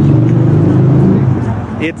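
A car driving past close by, its engine a steady low hum that is the loudest sound here and fades away near the end.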